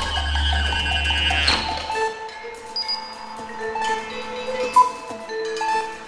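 Contemporary chamber ensemble with electronics playing: a loud attack as it begins brings a deep low rumble and high held tones that die away after about two seconds, followed by sparse held notes and one sharp high accent near five seconds.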